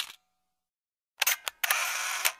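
Camera shutter sound effect: a sharp click, then about a second later two quick clicks followed by a longer mechanical burst of about half a second that dies away.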